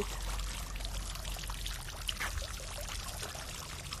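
Steady running, trickling water with a low rumble underneath.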